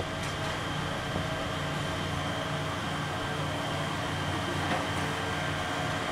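Vehicle engine idling steadily: a low, even hum with a few steady tones above it.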